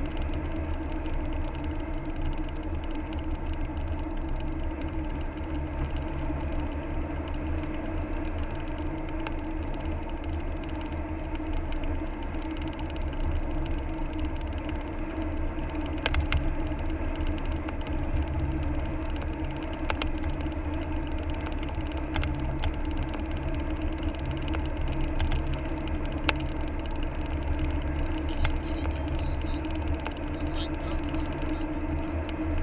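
Car driving at road speed, heard from inside the cabin: a steady low drone of engine and tyre noise, with a few sharp clicks scattered through it.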